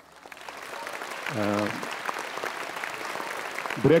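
Studio audience applauding, swelling over the first second and holding steady until a man's voice resumes near the end; a brief spoken word cuts through about a second and a half in.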